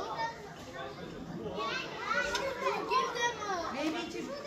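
Children's high-pitched voices calling and chattering, growing louder about halfway through, over a background murmur of people talking.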